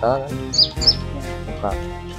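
A few short, high chirps from a caged kolibri ninja (purple-throated sunbird), mostly in the first second, over background music and a brief voice.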